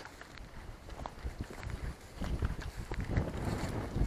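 Footsteps on a dirt path, with irregular light scuffs and a low wind rumble on the microphone. The steps grow denser about halfway through.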